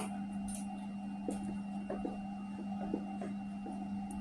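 Faint clicks of a MacBook Air's mechanical glass trackpad being pressed, about half a dozen spread over a few seconds, over a steady low hum.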